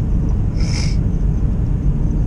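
Car driving, heard from inside the cabin: a steady low road and engine rumble. A short breathy hiss comes a little under a second in.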